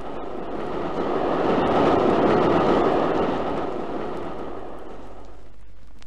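Radio-drama sound effect of a train running: a rushing, rumbling noise that swells to its loudest two to three seconds in and fades away near the end.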